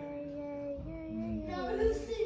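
A voice singing a slow tune in long held notes that step up and down in pitch.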